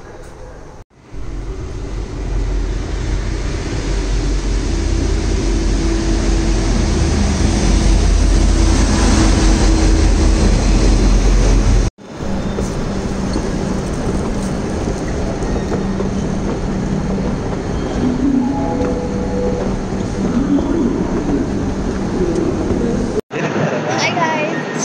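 Suburban electric train running: a loud low rumble with a steady whine that builds for about ten seconds, then stops abruptly. After that comes a quieter, steadier rail-station hum with a few short tones near the end.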